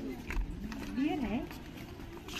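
Indistinct voices of people talking as they walk by, with a few light footsteps on stone paving.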